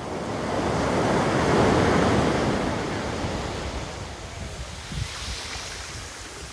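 Ocean surf breaking on a sandy beach: the wash of one wave swells to a peak about two seconds in, then slowly fades.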